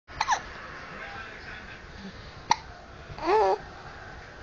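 Infant hiccuping: a quick pair of short sharp hiccups right at the start and a single sharp one about two and a half seconds in. A short, wavering voice follows a little later.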